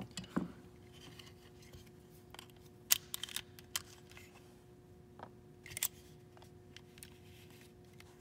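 Scattered small clicks and scrapes as a Springfield Hellcat's polymer frame is handled and its steel pins are worked loose by hand. The sharpest click comes about three seconds in, with a few more near six seconds.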